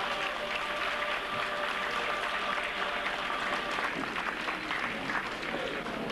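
A small crowd applauding, many hands clapping steadily. In the first few seconds a held musical chord fades out under the clapping.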